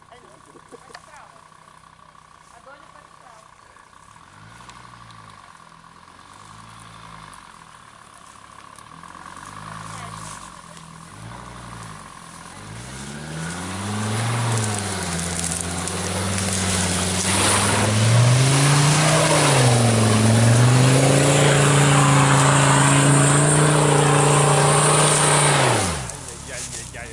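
Jeep Grand Cherokee engine revving in repeated surges as it drives through deep mud ruts, rising and falling in pitch and growing louder as it comes closer. In the last several seconds it is held at high revs with a few dips.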